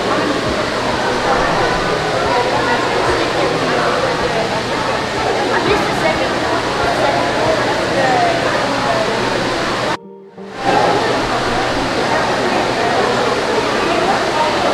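Steady rushing of an indoor waterfall, with the murmur of voices mixed in. The sound cuts out suddenly for about half a second roughly two-thirds of the way through.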